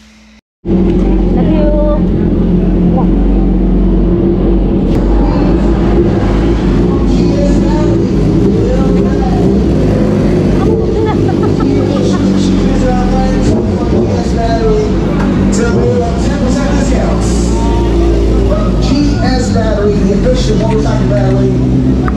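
Race motorcycles' engines running in the pit lane, a steady loud hum, under a music bed.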